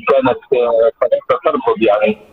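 A man talking over a telephone line.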